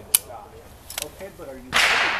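A sharp metallic click just after the start, then a single shot from an Armalite AR-180 5.56 mm rifle near the end, its report echoing away.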